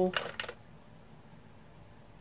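A short, noisy sound lasting about half a second at the start, then quiet room tone.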